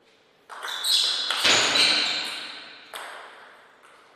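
Table tennis point being played: the ball pings off rackets and table. A louder noisy sound starts about half a second in and fades over the next two seconds.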